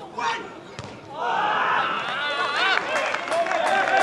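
A football struck with a single thud a little under a second in, followed by a swell of overlapping shouting voices on and around the pitch during a goalmouth scramble.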